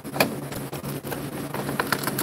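Plastic clicks and scraping of a Christie LX700 projector's air-filter frame being worked into its slot by hand. There is a sharp click a fraction of a second in and a few more near the end, as the frame is pushed to seat properly.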